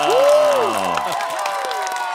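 Hand clapping with a man's drawn-out cheer that rises and falls in pitch over the first second.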